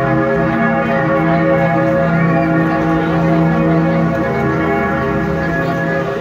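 A peal of bells, many overlapping ringing tones sounding together loudly.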